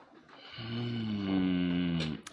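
A man's low, closed-mouth "mmm" hum of appreciation. It starts about half a second in and is held for about a second and a half, sinking slightly in pitch.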